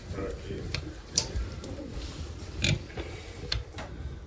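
Handling noise at a toilet's water supply line as it is being disconnected: a few scattered light clicks and knocks of the fittings. There is a brief low voice-like sound about two and a half seconds in.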